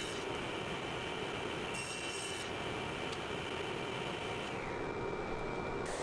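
Table saw ripping a strip of MDF: a steady cutting noise from the blade, which turns duller about five seconds in.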